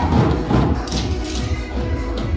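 Up-tempo fitness-class music with a steady beat, with drumsticks striking inflated exercise balls in time to it.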